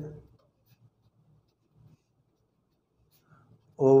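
Pen writing on ruled notebook paper: faint, intermittent scratching of the tip as an equation is written out.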